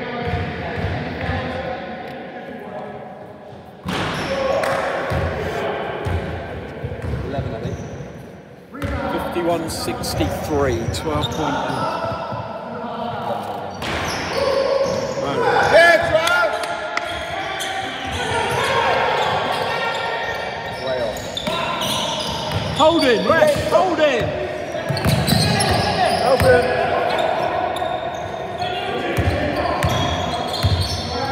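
Basketball game on a wooden sports-hall court: a ball bouncing, trainers squeaking on the floor and players calling out, all echoing in the hall.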